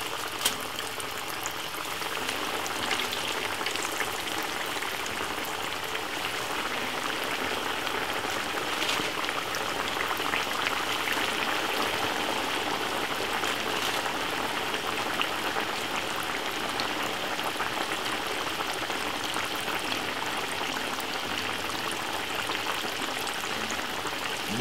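Floured chicken pieces frying in hot oil in a frying pan: a steady sizzle with scattered small crackles.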